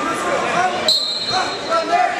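Spectators and coaches shouting in a large gymnasium hall during a wrestling bout. About a second in, a short, high, steady tone starts sharply and fades out.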